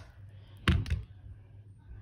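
A hard knock, two quick strokes about two-thirds of a second in, against faint room tone.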